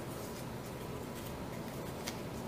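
Kraft cardstock frame being slid and repositioned over patterned paper: a faint paper rustle with a few soft scrapes, over a steady low room hum.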